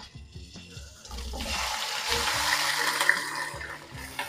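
Raw chicken pieces dropped into hot ghee and oil in a karahi, setting off loud sizzling about a second in that carries on steadily.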